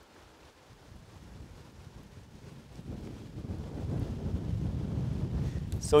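Wind buffeting the microphone: a low, uneven rumble that builds from near quiet to a steady blustering over the last few seconds.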